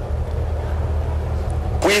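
A steady low rumble with a faint hum above it, heard through the microphone in a pause in a man's speech. His voice comes back just before the end.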